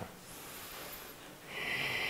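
A man breathing out, a steady hissy exhale that starts about one and a half seconds in, after a moment of faint room noise.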